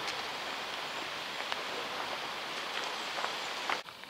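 Steady rustle of tree leaves in a moderate breeze, with a few faint clicks; it cuts off suddenly just before the end.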